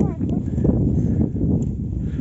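Indistinct voices over a steady low rumble.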